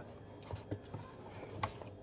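A quiet moment of room tone with a few faint short clicks, about half a second, three quarters of a second and a second and a half in.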